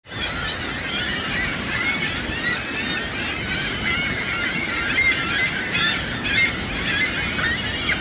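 A gull colony calling: many gulls squawking and crying at once in a dense, overlapping chorus, over a steady rush of falling water.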